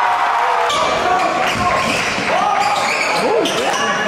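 Basketball game sound in a large gym: sneakers squeaking on the hardwood court in short, pitch-bending chirps, the ball bouncing, and a steady hubbub of crowd voices.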